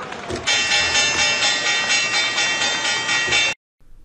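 Channel intro sting: a rising whoosh swells into a held, bright chord of many high ringing tones, which cuts off suddenly about three and a half seconds in.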